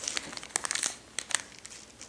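A small clear plastic bag holding a duck-shaped wax melt crinkling as it is handled and set down on a table: a quick flurry of crackles that dies away after about a second and a half.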